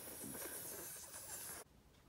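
A person hissing through the mouth as a puppet's sound effect, held for almost two seconds and then cut off abruptly.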